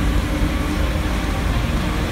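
Forklift engines running steadily while lifting a heavy load, a constant low rumble.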